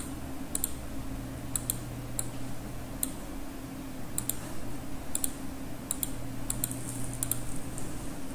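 Computer mouse clicking: short press-and-release double clicks about once a second, over a steady low hum.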